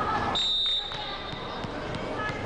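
A single held whistle blast, one steady high tone starting about a third of a second in and fading out after about a second, over the steady noise of a sports-hall crowd. It is typical of a volleyball referee's whistle.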